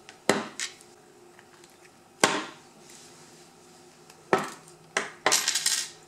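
Small metal tool prying at the steel circlip on a lock cylinder's cam, making sharp metallic clicks and scrapes at irregular intervals, with a quick clatter of clicks near the end as the clip works free.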